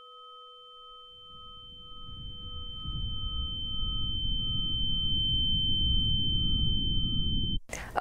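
Synthesized sound design on a commercial's soundtrack: three steady electronic tones, one of them pulsing, over a low rumble. The rumble swells louder from about a second in, and everything cuts off suddenly just before the end.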